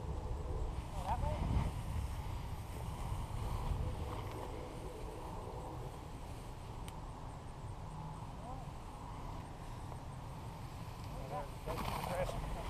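Wind buffeting the microphone in a steady low rumble, with brief faint fragments of distant voices now and then.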